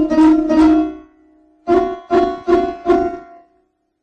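Sarod playing a short ornamental Hindustani phrase: a held note fades away, then after a brief gap come four quick plucked notes a little higher, evenly spaced, and the playing stops.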